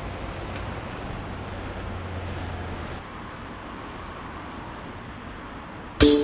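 Street traffic noise: a steady road rumble with a vehicle's low drone that fades about halfway through.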